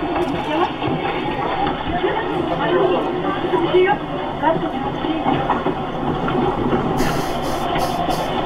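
Bus cabin sound played back from a low-quality video: steady engine and road rumble with rattling, and people talking over it. It sounds thin, with a few clicks near the end.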